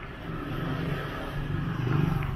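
Street traffic: a car's engine rumbling as it drives past close by, growing louder toward the end.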